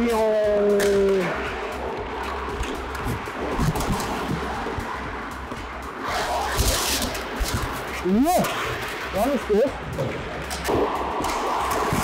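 Ice hockey play around the net: skates scraping the ice, sharp clacks of sticks and puck, and players shouting. A longer skate scrape comes about six and a half seconds in, and short shouted calls come around eight to nine seconds in.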